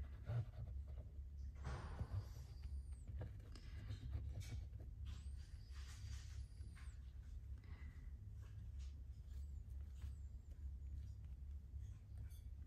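Glue squeezed from a plastic bottle in two spells of a second or two each, about two and six seconds in, with small ticks of hands handling lace and fabric. A steady low hum sits under it.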